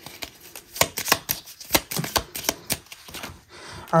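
Oracle cards being handled and shuffled by hand: an irregular run of sharp clicks and snaps, several a second, as the cards flick against each other.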